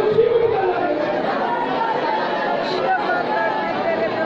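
Many women's voices praying aloud at once, overlapping into a dense, steady babble with no single voice standing out: a congregation confessing its sins aloud together.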